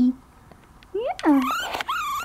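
Tiny four-week-old Yorkshire terrier puppy crying: a short run of high-pitched cries starting about a second in, one sliding down in pitch, the last ones very high and squeaky.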